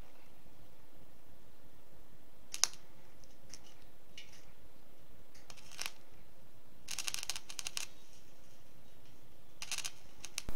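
Arc welder crackling in a few short bursts while steel gas-line pipe is tacked into a steel tank, with the longest burst about seven seconds in. A single sharp click about two and a half seconds in is the loudest sound.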